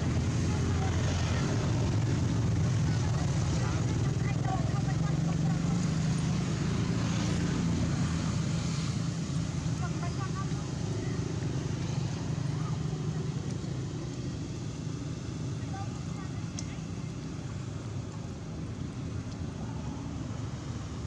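A steady low engine rumble in the background that fades gradually, with faint people talking.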